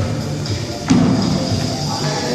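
Background music, with one heavy thump about a second in: a person landing on a rubber gym floor during box-jump work.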